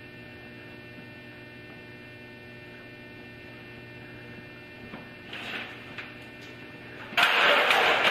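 Steady electrical mains hum with a buzz of evenly spaced overtones. About five seconds in, a brief louder noise comes and goes, and about seven seconds in, a sudden loud burst of noise starts and carries on.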